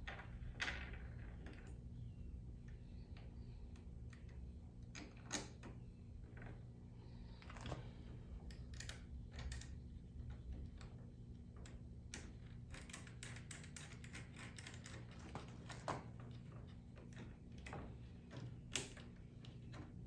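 Scattered small clicks and taps of metal on hard plastic as a bent steel L bracket and a bolt and nut are fitted into a plastic truck bed liner, with a quick run of ticks about two-thirds of the way through. A steady low hum sits underneath.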